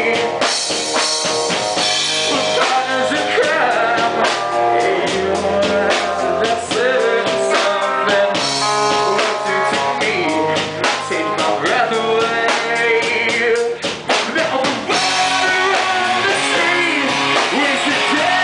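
Live rock band playing: a man singing over electric guitar and a drum kit.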